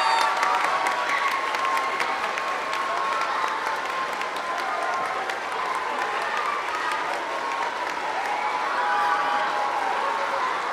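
An audience applauding steadily, the clapping dense and unbroken throughout.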